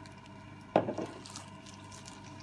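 A glass container knocked down onto a countertop, a sharp clunk about three-quarters of a second in followed by a smaller knock and a few light clicks.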